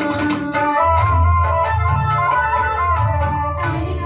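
Instrumental interlude of a song's accompaniment: an organ-like keyboard melody over a steady bass. A held sung note ends about half a second in, and the voice comes back near the end.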